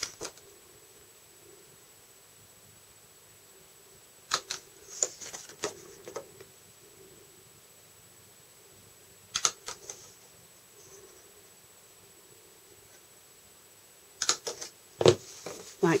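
Tiny hand-held paper hole punch clicking through cardstock, in three short clusters of sharp clicks several seconds apart.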